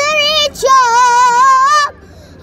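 A boy singing solo and unaccompanied: a short phrase, then one long held note with a wavering vibrato that stops just before the end.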